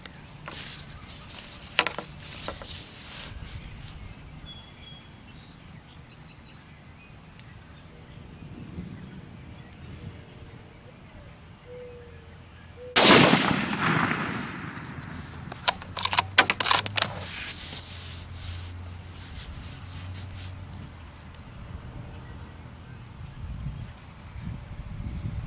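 A single shot from a .308 Winchester bolt-action Ruger American rifle about halfway through, with a short echo trailing after it. A few seconds later comes a quick cluster of metallic clicks as the bolt is worked to eject the case and chamber the next round.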